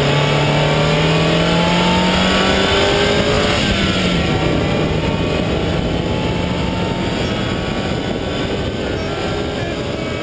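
Mazda Miata's four-cylinder engine pulling hard under full throttle, its pitch climbing steadily. About three and a half seconds in it drops for an upshift, then climbs again more slowly as the car gathers speed.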